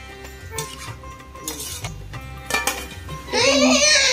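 A metal ladle clinks a few times against an aluminium cooking pot of vegetables over quiet background music. Near the end a small child starts crying loudly.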